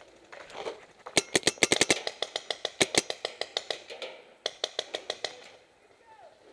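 Planet Eclipse Ego09 electropneumatic paintball marker, run on compressed air, firing a rapid string of shots at about ten a second from just over a second in until about four seconds. A second burst of about eight shots follows near the end.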